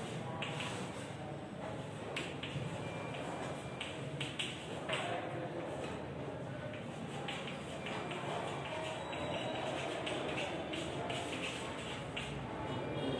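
Chalk tapping and scraping on a blackboard as figures are written, a run of short irregular clicks over a steady background murmur of the room.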